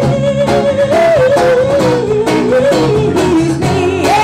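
Live band playing: a woman sings long held notes, the line lifting about a second in and then stepping gradually lower, over electric bass, acoustic guitar and cajon.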